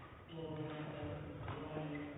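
A voice carrying in a large, sparsely filled sports hall, with a single sharp knock about one and a half seconds in.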